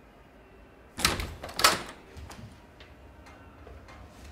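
A wooden door being unlatched and opened: two loud clunks about half a second apart, about a second in, followed by a few lighter clicks.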